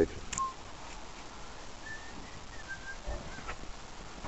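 Quiet outdoor background with a few short, thin bird chirps spread through the middle. A click comes just after the start, and a low bump with another click comes near the end.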